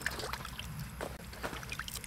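Water sloshing and dripping in a steel basin as hands wash red fruit in it, with a few small scattered clicks.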